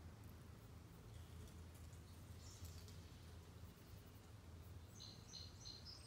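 Near silence: room tone with a steady low hum, and faint high chirps of birds around the middle and near the end.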